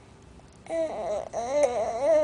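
Baby making a high-pitched, drawn-out, wavering whine, starting just under a second in.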